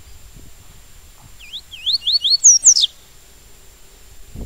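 Papa-capim seedeater singing one short phrase of the tui-tui song: about a second and a half in, a quick run of rising whistled notes climbs to two louder, higher notes and ends on a falling note.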